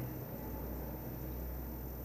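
Room tone in a pause between words: a steady low hum with faint hiss.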